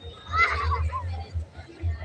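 Shouting and calling of players and onlookers at an outdoor football match, with one loud, high shout about half a second in.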